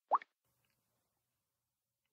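A single short electronic blip from the Samsung Galaxy S4's interface, rising quickly in pitch just after the start, as the animated-photo result opens.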